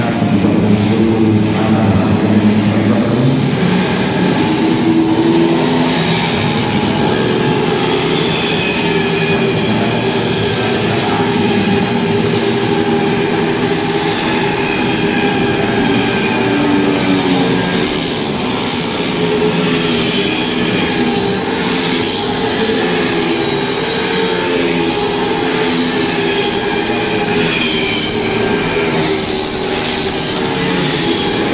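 Several racing 150 cc automatic scooters running at high revs together, a steady layered engine drone whose pitches drift slowly up and down.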